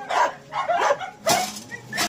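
Several dogs barking and whining in short, separate calls, the loudest a little past halfway.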